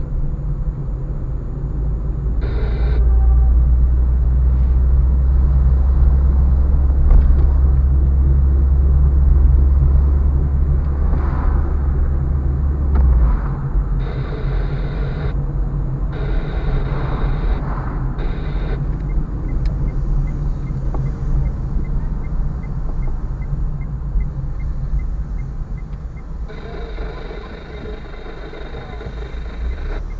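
A car's engine and road noise heard from inside the moving cabin: a deep, steady rumble that is heaviest in the first half and eases off about halfway through.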